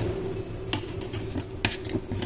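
A metal spoon stirring and scraping a thick, lumpy cocoa-and-milk mixture in a stainless steel pot, with a few sharp clinks of spoon on pot, one about a second in and two close together near the end.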